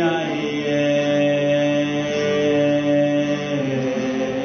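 Worship song played on acoustic guitars, with voices holding one long sung note that changes pitch near the end.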